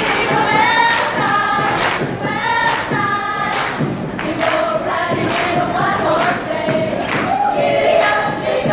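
Women's a cappella group singing in close harmony through microphones and PA speakers, over a steady percussive beat about twice a second.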